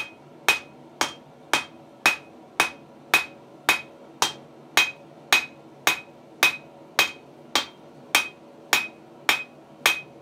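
A hand hammer strikes hot steel on a small anvil in a steady rhythm of just under two blows a second, forging the bar. Each blow rings briefly and brightly off the little anvil, which is prone to ringing.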